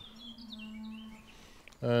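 Outdoor garden ambience with birds chirping in the background and a steady low drawn-out tone over the first second and a half.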